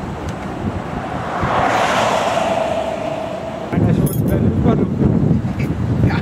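A vehicle passing by: a rushing noise that swells and fades over about three seconds, carrying a steady whine. Then, from a little before four seconds in, a heavier low rumble of wind on the microphone with voices underneath.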